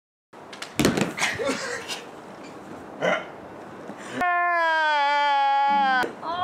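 A thud of a body landing on an inflatable air-track mat with short cries, then an edited-in 'fail' sound effect: one long, clean tone, slightly falling in pitch, that drops to a lower note near the end.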